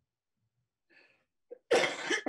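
A person sneezing once near the end, after a faint breath about a second in.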